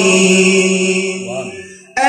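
A man's voice reciting a naat unaccompanied through a microphone, holding one long note that fades away over the last second before the next phrase starts right at the end.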